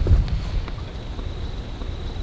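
Wind buffeting the microphone: an uneven low rumble that is strongest at the start and eases off after about half a second.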